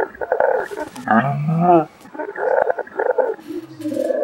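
A man roaring and growling without words: several rough, strained growls with short breaks between them, some rising and falling in pitch.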